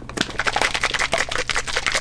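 Plastic shaker cup of soy milk and powder shaken hard by hand, giving a fast rattling clatter for about two seconds that stops abruptly.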